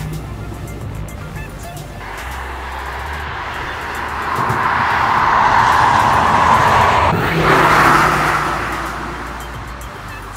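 Audi A5 Sedan e-hybrid driving past on the road, its tyre and road noise swelling over a few seconds and fading away, over background music.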